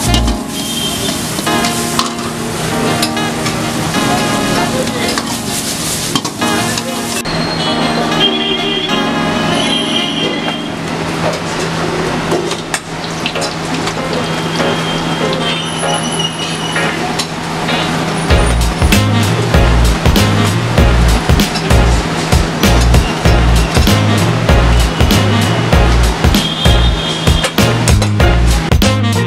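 Food frying in hot oil in a wok and kadai, a steady sizzle, mixed with background music; a regular bass beat comes in about two-thirds of the way through.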